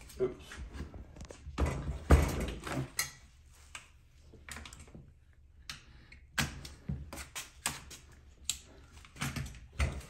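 Metal clicks and clunks of a Smith & Wesson Response carbine being opened up by hand, its parts knocking and sliding as it is taken apart. The loudest knock comes about two seconds in, followed by a quieter stretch and then more quick clicks.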